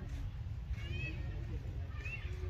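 A macaque giving one short, high-pitched squeaky call that rises and falls, about a second in, over a steady low rumble.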